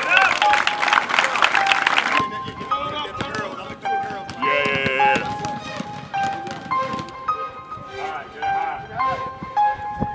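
Background music with short, steady melodic notes, under a burst of many voices shouting together in the first two seconds and a brief high wavering voice about halfway through.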